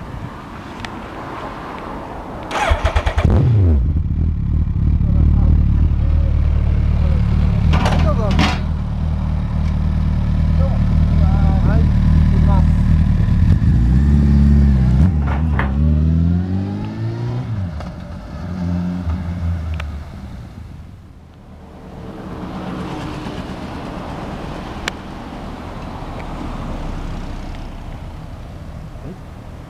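A 2008 Suzuki GSX1300R Hayabusa's inline-four, through an aftermarket exhaust, starts about three seconds in and settles into a steady idle. Around the middle it is revved several times, rising and falling, then drops back and fades away about twenty seconds in, leaving a fainter steady background.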